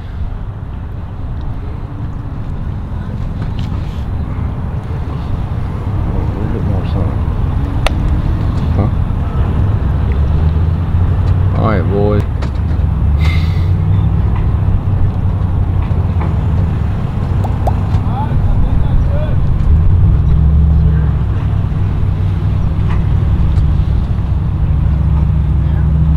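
An engine running with a low, steady hum that grows louder over the first ten seconds and then holds. A voice cuts in briefly about twelve seconds in.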